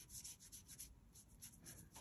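Faint, soft scratching of a paintbrush with watered-down white ink, a few light irregular strokes barely above silence.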